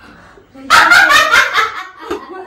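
A burst of dog-like barking, several short yelps running together, starting a little under a second in and lasting about a second.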